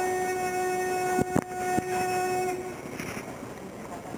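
A sumo yobidashi's chanted call of a wrestler's name, one long held note that fades out about two and a half seconds in. A few sharp knocks sound in the middle of the note.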